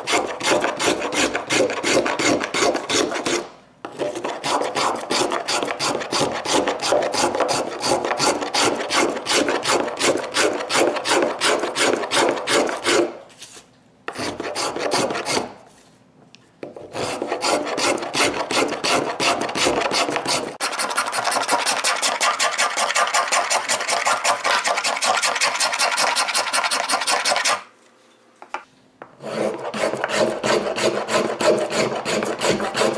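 A small hand carving tool cutting shavings from a wooden violin plate in quick, rasping strokes, several a second, broken by a few short pauses; the strokes turn lighter and higher about two-thirds of the way through.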